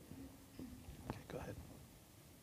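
Faint, indistinct speech: a few quiet words spoken away from the microphone, in two short bursts.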